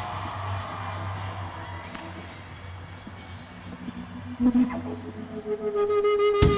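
Low steady hum from a stage amplifier with faint arena crowd noise, and a few electric guitar notes about four and a half seconds in.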